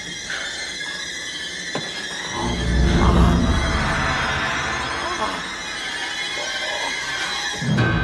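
Suspense film score: sustained high tones, with a deep low rumble coming in about two and a half seconds in. A man's strained cries sound over the music.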